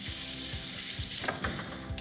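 Kitchen sink tap running as hands are washed under it: a steady rush of water that starts suddenly.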